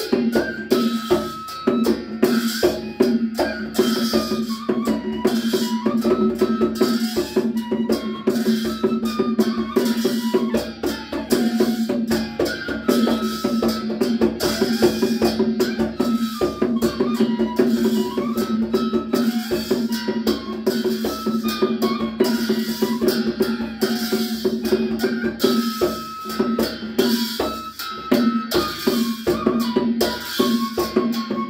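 Newar folk ensemble playing a Mataya song. A bamboo transverse flute carries a stepwise melody over a continuous beat from a two-headed barrel drum and a pair of small thick hand cymbals clashing in rhythm.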